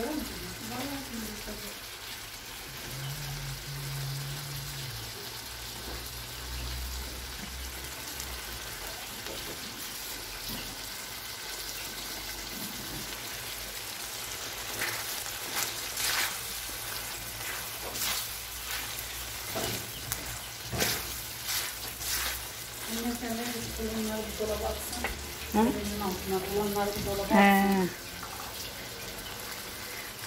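Diced mutton frying in sheep's tail fat in a wide steel pan: a steady sizzle. About halfway through, a wooden spoon knocks and scrapes against the pan a number of times as the meat is stirred.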